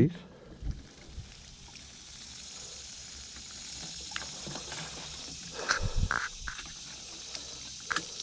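Diluted worm-casting tea pouring from a plastic watering can's rose onto wood-chip mulch: a steady splashing hiss that builds over the first couple of seconds. A few brief thumps and rustles come a little past the middle.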